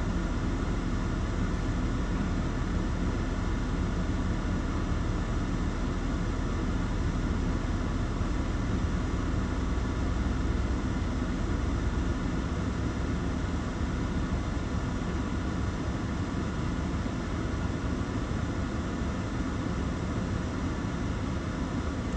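Steady hum and fan noise inside a parked car's cabin, with the engine idling and the air conditioning running, and a slight low rumble swelling about halfway through.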